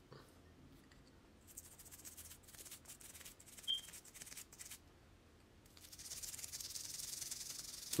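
Toothbrush bristles scrubbing toothpaste over a gold grill: soft, quick scratchy strokes, faint at first and steadier and a little louder over the last two seconds, with one short click near the middle.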